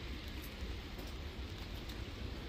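Steady outdoor background noise of an open-air market, an even hiss over a fluctuating low rumble, with a few faint clicks.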